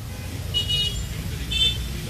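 Outdoor street background: a steady low traffic rumble with two short high-pitched beeps about a second apart.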